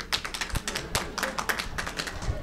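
Scattered clapping from a small audience: a quick, irregular run of sharp claps that tails off near the end.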